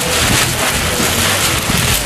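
Cloth flag flapping rapidly in a strong wind: a dense, even, hissing rustle.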